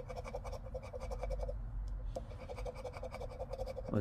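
Poker chip scraping the coating off a scratch-off lottery ticket on a tabletop: a quick run of short rasping strokes.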